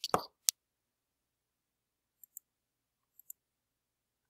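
A sharp click about half a second in, then two faint, light double clicks later on, against a quiet room: clicking at the presenter's computer.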